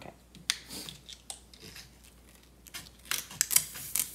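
Scissors cutting into the top of a vacuum-packed foil brick of ground coffee, breaking its seal: a few sharp snips, then a quick run of snips and crackling of the stiff packaging near the end.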